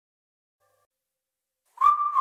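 Silence, then near the end a high whistled note starts the track's melody, the opening of an electronic dance remix.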